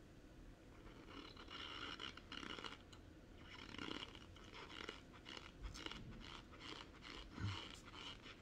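Faint chewing of a mouthful of dry cornstarch: a soft crunch in short repeated bursts, with a few light clicks.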